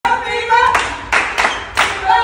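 A voice at the start, then four sharp hand claps in just over a second.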